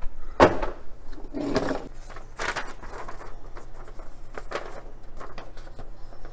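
Paper rustling and crinkling as a folded instruction sheet is pulled out and opened, in a series of short crackles about once a second.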